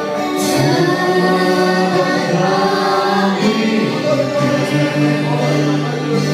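A congregation singing a worship song together, on long held notes.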